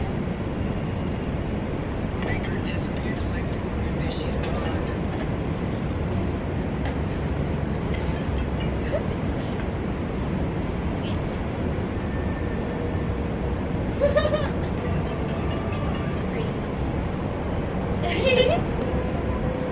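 Steady low rumble of city background noise, with a few faint, brief voices now and then.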